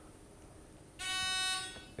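A game-show contestant buzzer sounding once: a single steady electronic tone, about two-thirds of a second long, starting about a second in, as a contestant rings in to answer.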